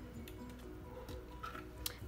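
Soft background music with steady held notes, with a faint click shortly before the end.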